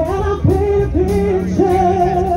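Live rock band playing through a PA: a woman sings a line of short notes that each slide up into pitch, the last one held, over electric guitar, bass and drums.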